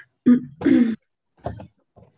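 A person clearing their throat: two short vocal sounds in the first second, then a faint brief one about a second and a half in.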